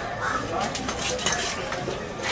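A large knife blade slicing through a ray's flesh and skin, giving a few short wet scraping strokes one after another.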